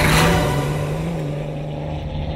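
Mini All4Racing rally car passing close at speed, with a rush of noise as it goes by. Its engine then holds a steady drone, dropping slightly in pitch and fading a little as the car pulls away.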